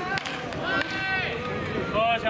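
A baseball bat cracks against a tossed ball right at the start during toss batting, with another sharp crack near the end. In between, a high voice calls out briefly.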